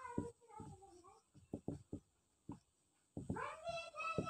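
Faint marker strokes and taps on a whiteboard. About three seconds in, a long cat-like meow starts, rising and then holding its pitch.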